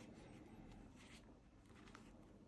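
Near silence, with faint soft rubbing of fingers pressing and smoothing a latex sheet around a glued valve, a few brief rustles about a second in and near the end.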